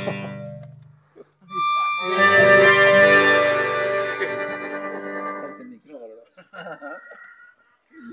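Accordion music of a chamamé: the previous notes die away, then about a second and a half in the accordion sounds one long held chord that fades out over about four seconds, closing the piece. Brief voices follow near the end.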